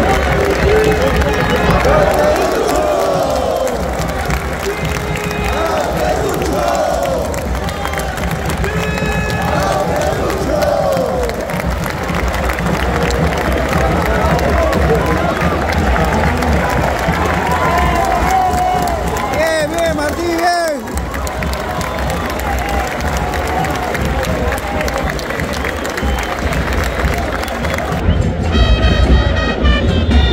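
Football stadium crowd cheering and chanting in unison after a home goal, many voices singing together over a steady low rumble. Near the end a louder pitched blast rises above the crowd.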